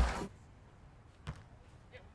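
A single sharp smack of a hand striking a beach volleyball on the serve, about a second in, against otherwise very quiet court ambience.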